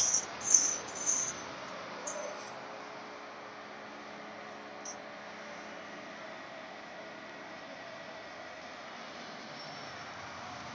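Faint, steady arena background hiss picked up by the commentary microphone. In the first two seconds there are a few short, high hissing bursts.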